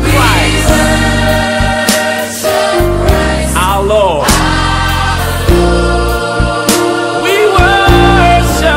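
Gospel music: a choir singing over instrumental backing, the voices sliding between notes over sustained bass notes.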